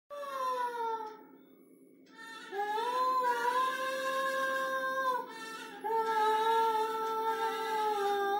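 A woman's voice singing long, drawn-out held notes with no accompaniment: a falling note at the start, a short pause, then two long sustained notes.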